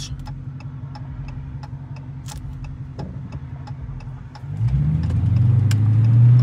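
Dodge Challenger R/T's 5.7-litre Hemi V8 idling, heard from inside the cabin, then accelerating as the car pulls away about four and a half seconds in, the engine getting much louder. A turn signal ticks steadily, a little under three times a second, under the idle.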